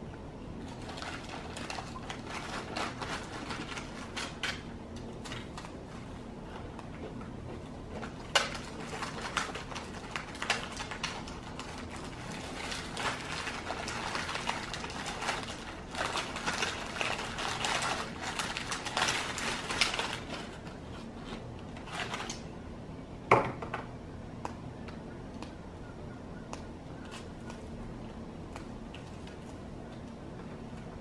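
Irregular rustling and clicking of plastic packaging, bags, cups and spoons being handled on a table, busiest through the first two-thirds, with one sharper knock after that. A faint steady low hum lies underneath.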